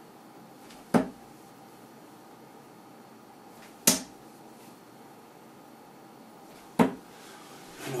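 Three darts striking a bristle dartboard one after another, each a single sharp thud, about three seconds apart.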